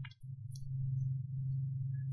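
Steady low hum, with a few faint clicks near the start and about half a second in.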